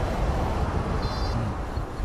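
Road traffic going by: a steady low rumble of passing cars and scooters, with a brief faint high-pitched tone about a second in.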